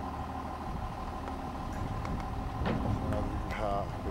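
A vehicle engine runs steadily at idle under a constant high-pitched hum, the machinery working the grain hopper trailer's side discharge into a truck.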